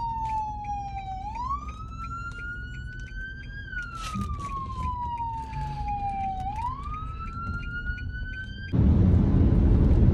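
A siren wailing, its pitch sliding slowly down and then sweeping back up, twice over. About nine seconds in it cuts to loud, steady road noise inside a moving car.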